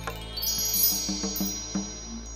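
Magic sparkle chime sound effect: high, bell-like chime tones shimmering over a steady low drone, with short low notes repeating about three times a second.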